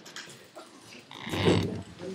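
A short, grunt-like vocal sound from a person in the room, a little over a second in, after a quiet pause.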